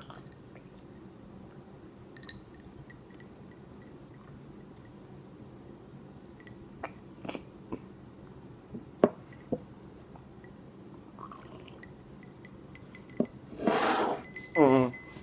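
A person slowly drinking icy salt water from a glass, with a few small clicks of ice and glass in the middle. Near the end there is a loud vocal outburst as the glass comes away from his mouth.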